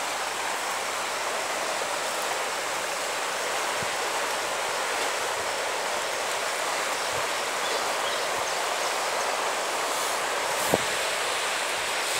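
Swollen river in spate rushing past the bank, a steady, even hiss of fast floodwater. A single sharp click comes near the end.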